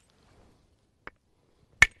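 Deer-antler billet striking the edge of a stone handaxe in soft-hammer percussion to drive off a thinning flake: a light tap about a second in, then one loud, sharp, glassy crack near the end.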